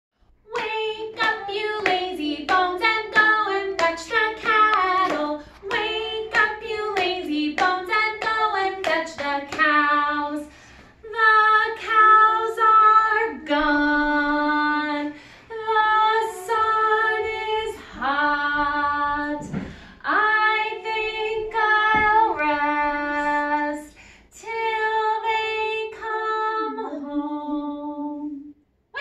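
A woman singing a children's action song unaccompanied: quick short notes through the first ten seconds, then longer held notes with brief pauses between lines.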